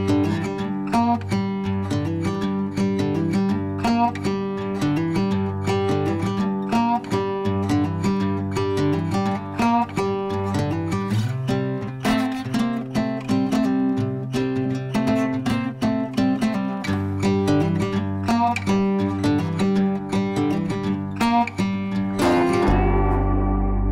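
Background music led by acoustic guitar, picked and strummed in a quick, steady rhythm over a bass line.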